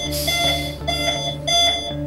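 An AED's electronic CPR prompt beeping repeatedly, about two beeps a second. A short hiss comes about a quarter of a second in.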